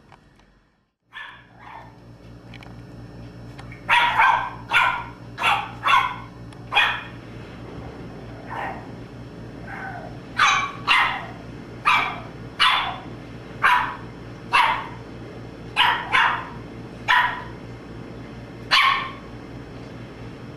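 Boston Terrier puppy barking: a long string of short, high yaps, about twenty of them, starting a few seconds in and coming roughly every half second to second, with a couple of brief pauses.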